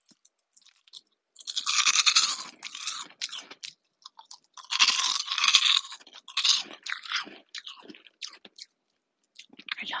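Freeze-dried candy being bitten and chewed close to the microphone. There are two long, loud bursts of crisp crunching, then shorter, softer crunches that thin out toward the end.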